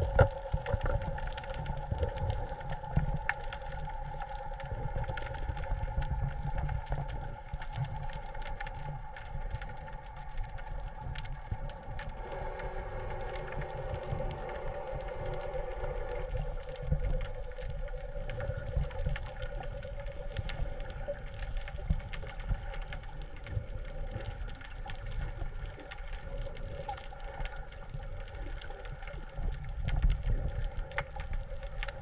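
Muffled underwater sound through a camera housing: a constant low rumble of moving water with faint scattered clicks, under a steady droning hum, with an extra lower tone joining the hum about twelve seconds in for a few seconds.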